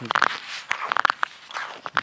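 Footsteps on clear lake ice: boots crunching with several steps in a row.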